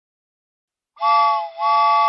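Silence for about a second, then a train whistle sounds two toots, a short one followed by a longer one, each a steady chord of several tones.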